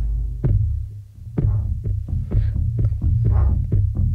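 A cinematic electronic loop played from the Loop Pool Boom & Bust Kontakt sample instrument. A heavy bass throb runs under it, with percussive hits that come closer together in the second half. The sound dips briefly about a second in.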